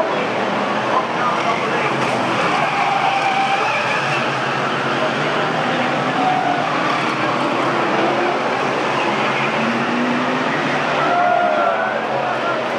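BriSCA F1 stock cars racing as a pack, their engines revving up and down in a steady roar. Voices can be heard underneath.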